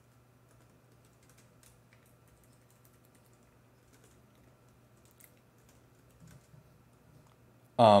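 Faint typing on a computer keyboard: scattered, irregular keystrokes as code is entered, over a steady low hum.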